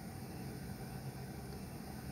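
Faint steady background hiss with a low hum, with no distinct sounds: room tone.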